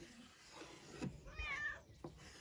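A cat meowing once, a short bending call about one and a half seconds in. A light knock on the wooden cutting board comes just before it.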